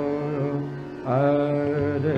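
Hindustani classical vocal in raga Marwa: a male voice holds a long note that fades away, then a new phrase begins about halfway through with a short rising slide. A steady drone accompaniment sounds underneath.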